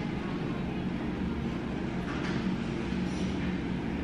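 Steady low hum with an even rushing noise underneath, the constant background drone of a tiled restroom.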